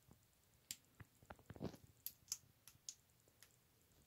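Faint, scattered clicks of small plastic Lego pieces being handled and pressed together, about ten over two and a half seconds.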